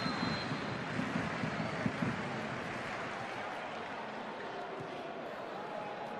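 Steady wash of stadium crowd noise from many spectators, a little louder in the first couple of seconds.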